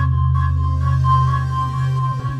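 Early-nineties acid ambient electronic music: a sustained low synth drone under a steady, pulsing high tone, with repeated downward-gliding synth sweeps. The low drone cuts out near the end.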